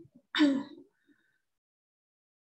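A woman clears her throat once, briefly, about a third of a second in.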